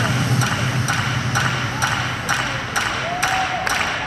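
Arena audience clapping along in rhythm, about two claps a second, amid crowd noise, while the skating program's music thins out to a low bass that fades about halfway through.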